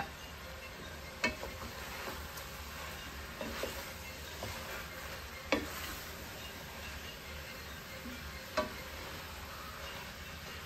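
Wooden spoon stirring sausage and chicken as they sizzle in a metal pot, with a few sharp knocks of the spoon against the pot.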